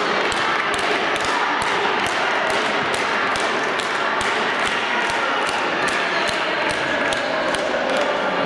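Spectators in an echoing sports hall clapping in a steady rhythm, about three sharp claps a second, over a hubbub of voices.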